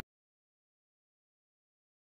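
Complete silence, with no sound at all.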